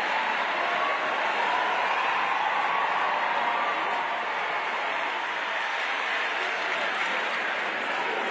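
A congregation applauding steadily, with crowd voices mixed in.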